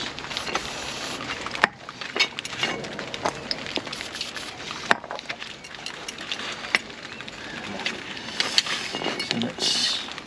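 Steady rain hiss with a few sharp metallic clicks and knocks as a drum-type parking brake shoe and its fittings are handled.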